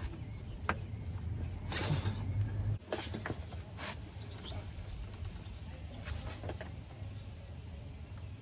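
Socket ratchet backing out a car's oil drain plug: scattered, irregular clicks and light metal knocks, with a low hum that stops about three seconds in.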